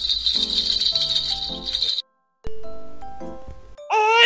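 A baby-rattle sound effect jingles for about the first two seconds over light background music. The audio cuts out briefly just after the rattle stops, and the music then continues.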